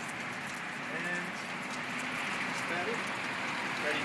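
Water from a drip irrigation line spraying and splashing down a stack of garden-wall modules: a steady hiss with fine ticks of falling drops.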